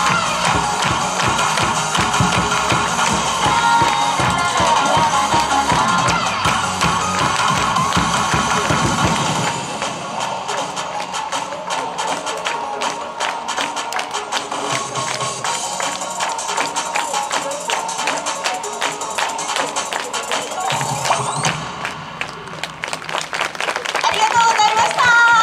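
Upbeat music over a stadium PA. About ten seconds in the bass drops out and a crowd claps along in a fast, regular rhythm: the club's chant-style clap routine, which fades near the end.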